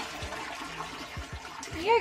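Japanese toilet flushing on its small-flush setting, water rushing steadily, with the hand-wash spout on top of the tank running as the tank refills.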